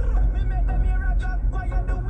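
Steady low road and engine rumble inside a moving car's cabin, with a faint voice in the background.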